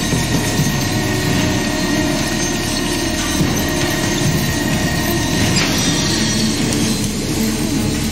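Loud, steady din of industrial machinery running, with steam hissing, mixed with a music score.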